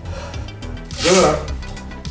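Music playing in the background, with one short, loud, breathy vocal exclamation from a man about a second in.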